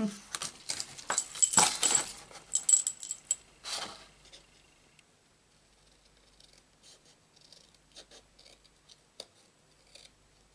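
Cardstock being handled, lifted and folded by hand: about four seconds of busy rustling and crinkling with light clicks, then only occasional soft taps and rustles.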